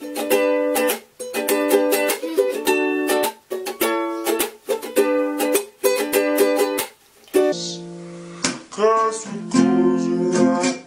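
Ukulele strummed in a steady, repeating chord pattern. After about seven and a half seconds the sound cuts to a woman's voice singing over the ukulele.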